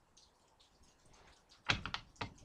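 Hands handling tarot cards on a table: near the end, a quick run of three light clicks and taps.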